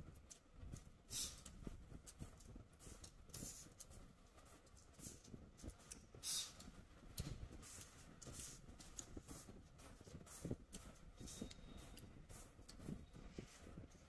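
Faint chewing and mouth noises, heard as small irregular clicks and soft crackles close to a clip-on microphone.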